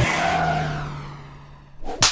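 Cartoon car sound effect in an animated intro, fading away over about a second and a half, followed by a short sharp whoosh near the end.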